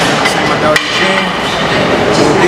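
A single sharp metal clank of gym weight equipment a little under a second in, over continuous busy weight-room background noise.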